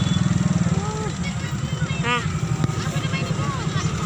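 An engine running steadily close by, a low rumble with a fast even pulse, under scattered voices of people talking.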